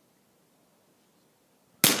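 A single gunshot fired close by near the end: one sharp crack with a short echoing tail, after near quiet.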